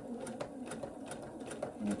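Husqvarna Viking sewing machine straight-stitching slowly along the edge of an appliqué through quilted layers, its motor humming under a slow, even ticking of needle strokes.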